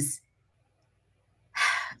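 A woman's sharp intake of breath about one and a half seconds in, after a pause of silence, before she speaks again; the tail of a spoken word is heard at the very start.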